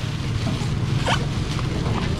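Thin plastic bags rustling and crinkling as seafood is bagged, with one brief sharp rustle about a second in, over a steady low hum.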